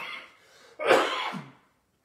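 A man coughs once, a little under a second in.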